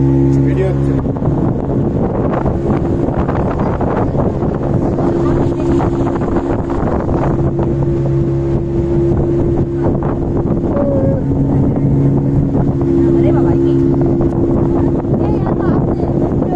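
Speedboat engine running steadily under way, holding a constant pitch, with the rush of wind and water over the moving hull.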